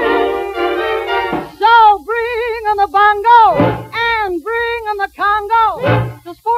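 A female singer's voice with strong vibrato, in short rising-and-falling phrases, in an Afro-Cuban mambo number. It follows a held ensemble chord that breaks off about a second and a half in.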